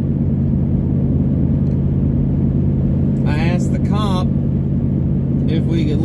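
Steady low drone of a running car heard from inside the cabin, with a brief vocal sound a little past the middle.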